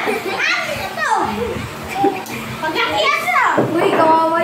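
Children's voices, talking and calling out with high-pitched, gliding tones.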